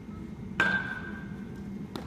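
A baseball struck by a metal bat about half a second in: a sharp crack with a ringing ping that fades over about a second. A steady low hum runs underneath.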